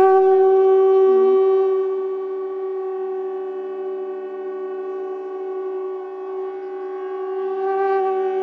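Conch shells blown together in one long held note, loudest at the start and easing slightly after about two seconds, sounded for the ceremonial lighting of the lamp. A soft steady drone runs underneath.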